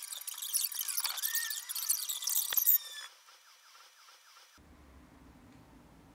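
A loud, high-pitched electronic screech with crackle and gliding whistle tones, lasting about three seconds and cutting off suddenly. Faint high tones follow before a low hum returns near the end.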